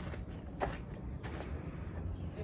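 Faint footsteps on a dirt path, about one every two-thirds of a second, over a low background rumble.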